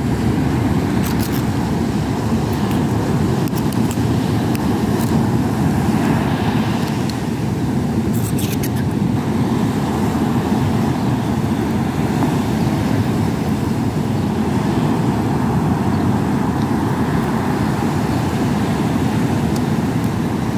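Steady roar of a rough sea breaking on the beach, mixed with wind, with a few faint clicks over it.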